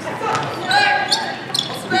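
Basketball game sounds in a gym: scattered thuds of the ball and players' feet on the hardwood during a rebound scramble, with a high-pitched shout held for about half a second partway through.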